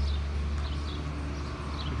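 Outdoor street ambience: a steady low rumble with birds chirping faintly a few times.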